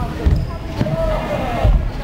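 Voices chattering in the background with several low thuds from BMX bike tyres on the skatepark ramp.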